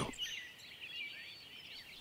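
Faint birdsong: many short, high chirps and twittering phrases from small birds.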